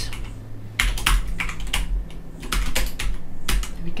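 Typing on a computer keyboard: a quick, irregular run of key clicks as a spreadsheet formula is keyed in and entered.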